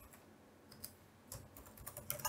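Faint computer keyboard typing: a handful of separate, irregularly spaced keystrokes.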